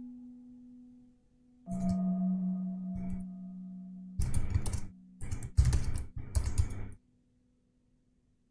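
Typing on a computer keyboard in several quick bursts from about four seconds in, over soft ambient generative music of long held tones, with a new note entering just under two seconds in.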